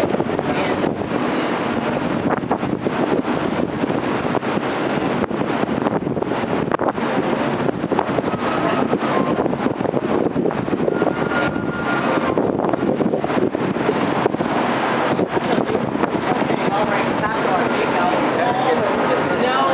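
Steady running noise of a boat under way heard from its open deck, with wind on the microphone, scattered clicks and indistinct voices.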